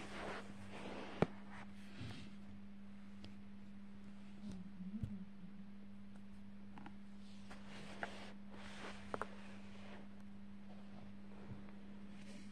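Quiet room with a faint steady hum and a few scattered light clicks and taps, the sharpest about a second in and a small cluster near the middle.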